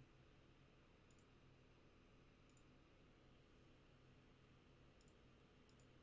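Near silence: room tone with four faint computer-mouse clicks spread through it.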